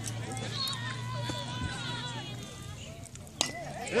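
Spectators talking in the background, then about three and a half seconds in a single sharp crack of a bat hitting the ball, followed by a brief ringing tone.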